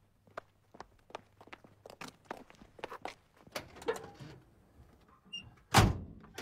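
A run of light knocks and clicks, about three a second, over a faint low hum, then one loud, heavy thump near the end.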